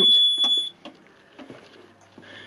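Fire alarm system sounding a steady, high-pitched electronic tone that cuts off suddenly less than a second in as the panel is reset, followed by a few faint handling clicks.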